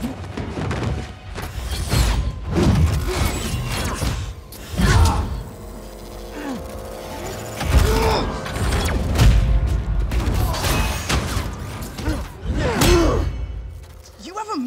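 Action-film fight sound effects: a run of heavy punches, thuds and impacts, with the mechanical whirring of a metal prosthetic arm and a music score underneath.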